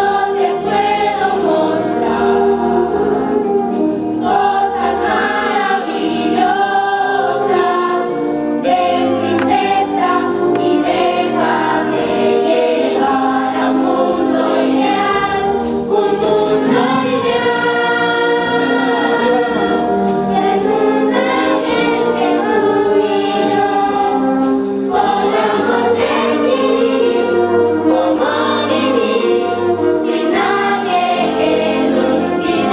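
A large children's chorus singing a song on stage, accompanied by a live wind band, with the music running without a break.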